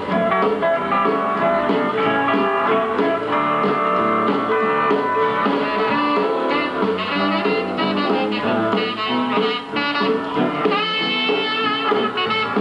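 Western swing band playing an instrumental number live, with steel guitar, saxophones and other horns over a rhythm section.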